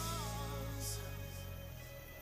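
Background music: the beat stops and a held chord rings on, fading out.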